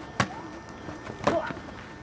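Padded foam boffer weapons whacking together or onto a fighter in sparring: one sharp hit, then a second, louder flurry of hits about a second later.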